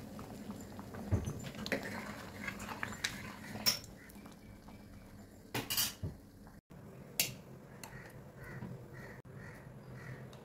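Thick chana dal payasam bubbling in an open aluminium pressure-cooker pot, with scattered sharp pops and clinks over a low steady simmer; the loudest cluster of pops comes a little past the middle.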